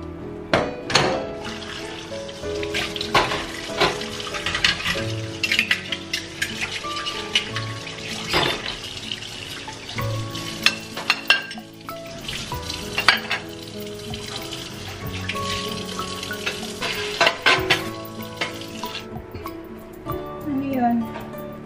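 Hand-washing dishes at a stainless steel sink: ceramic plates and bowls knocking and clinking against each other, the steel basin and a wire drying rack, in many short irregular clatters, with a hissing wash of water, over soft background music.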